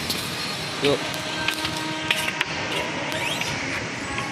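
Shopping-mall ambience: background music playing over a steady hall hum, with a short snatch of a voice about a second in.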